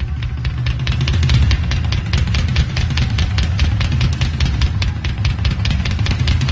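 Southern rock band playing live: electric guitars over bass and drums, with the cymbals struck at a fast, even beat.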